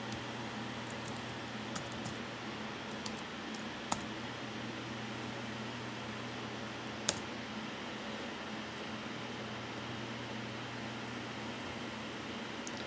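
Steady low hum and hiss of a computer and room, with a few scattered sharp clicks of computer keys or mouse, the loudest about seven seconds in.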